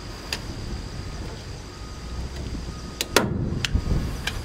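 Hand staple gun firing staples through plastic mesh into a wooden fence rail: a few sharp snaps, the loudest a close pair about three seconds in.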